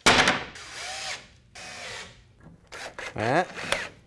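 A sharp knock, then a cordless drill driving wood screws into the shelf's 2x4 frame in several short runs, its motor pitch bending as it speeds up and slows.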